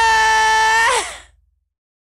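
A male rock singer holds one long, high, screamed note without the band. About a second in it slides down in pitch and fades out.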